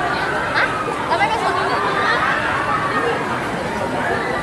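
Several people's voices talking and chattering.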